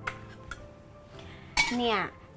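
Metal spatula clinking against a ceramic bowl and wok as stir-fry is dished up, with a sharp click at the start and another about half a second in.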